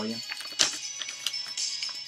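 Background music plays at a moderate level while a 12-inch vinyl record is handled in its paper sleeve, with a few sharp clicks and rustles, the loudest about half a second in.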